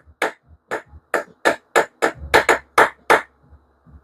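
A series of about ten sharp metallic clacks, roughly three a second, from whacking the spine of an open Civivi Qubit button-lock pocketknife to test its lock. The lock holds solid under the blows.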